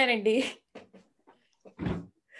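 A woman's voice over a video call holding a long, wavering drawn-out word, which ends about half a second in. Then near quiet, with a short breathy burst near the end.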